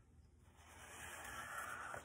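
Plastic ice scraper wiping shaving cream off a sheet of paper: a soft scraping hiss that starts about half a second in and grows louder.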